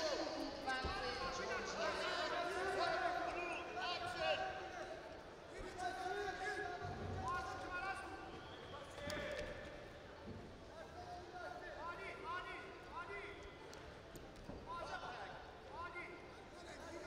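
Voices shouting in the arena while two wrestlers grapple on the mat. Short squeaks and dull thuds of wrestling shoes and bodies on the mat come through now and then.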